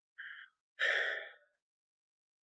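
A man breathing out twice: a short faint breath, then a louder sigh lasting most of a second.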